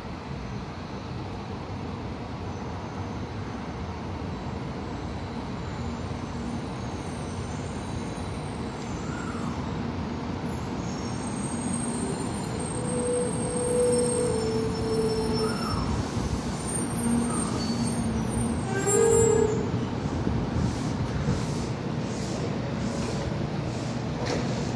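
700 Series Shinkansen train running into the platform and braking to a stop: a steady rushing noise that grows louder as it nears, with short whining tones as it slows in the second half.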